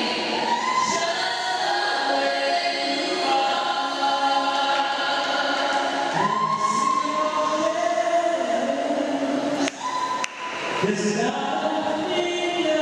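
A small vocal group singing a cappella through microphones, a male lead voice with backing voices in harmony holding long notes. Around ten seconds in there are two short clicks, each with a brief dip in the sound.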